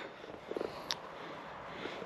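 Quiet outdoor background noise in a pause between spoken phrases, with one faint click about a second in.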